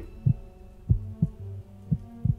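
Heartbeat sound effect: low double thumps, about one beat a second, over a low steady hum.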